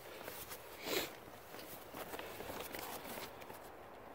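Faint rustling of a plastic tarp being handled as a tent stake is pulled from its corner eyelet, with a brief louder rustle about a second in.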